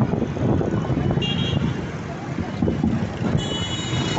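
Steady street traffic noise mixed with crowd murmur, with a vehicle horn tooting briefly a little over a second in and again, longer, near the end.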